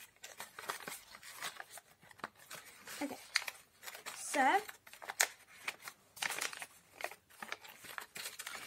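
Glossy magazine paper crinkling and rustling in irregular small crackles as hands open out and shape a folded origami paper boat.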